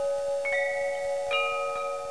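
Outro jingle of struck, bell-like chime notes, each ringing on under the next. New notes come in about half a second in and again a little past the middle.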